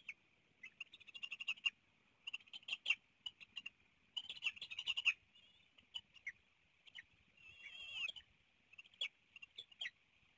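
Bald eagles at the nest calling in short bursts of high, rapid chittering notes, about five bursts, with a longer wavering call about eight seconds in. A steady high hiss runs underneath.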